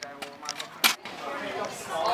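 People talking in the background, not close to the microphone, with one sharp click a little under a second in.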